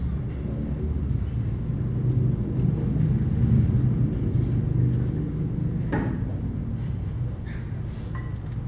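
Low rumbling room noise with faint audience murmur, swelling in the middle, and a single knock about six seconds in.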